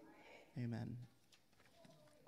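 A faint, brief low 'mm' from a man's voice lasting about half a second, followed by a few faint clicks as a sheet of paper is handled.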